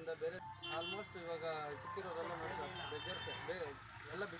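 Mostly speech: a man talking inside a vehicle's cabin, with a steady vehicle engine hum beneath his voice.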